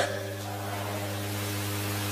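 Pause in the speech: a steady low electrical hum with hiss from the microphone and sound system, and a few faint held tones underneath.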